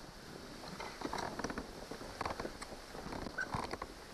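Scattered light clicks and taps from fishing gear handled aboard a plastic kayak, in small clusters over a faint hiss.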